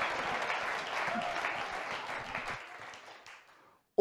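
Audience applauding, dying away about three and a half seconds in.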